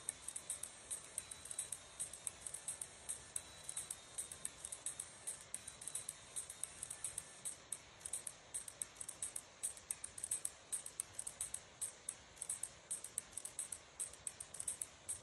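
Countdown-timer video's bomb ticking sound effect playing from a laptop: a fast, even run of sharp, high ticks, several a second.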